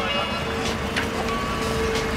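Small hatchback car's engine running as it rolls up and stops, under a steady held note of background music.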